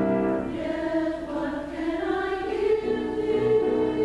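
Mixed church choir singing a sacred choral piece in sustained harmony, the voices settling into a held chord about three seconds in.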